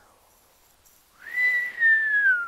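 A woman whistling one long note that starts about a second in and slowly slides down in pitch: a whistle of disbelief at a high price.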